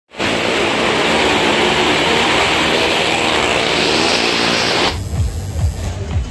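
Cars racing around the vertical wall of a well of death (maut ka kuan), engines running hard and tyres running on the wall planks, a loud, dense, steady noise. It cuts off sharply about five seconds in, giving way to fair music with a thumping beat.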